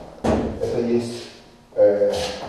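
Speech only: a man's voice talking in two short stretches, with a sharp onset about a quarter second in.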